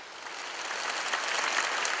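A large audience applauding, the clapping swelling over the first second and a half and holding near its peak at the end.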